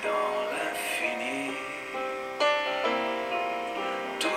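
Instrumental passage of a slow chanson: piano chords with upright double bass accompaniment, a new chord struck about two and a half seconds in.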